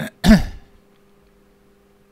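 A person coughing to clear the throat: two quick coughs, the louder second one about a third of a second in, then stopping.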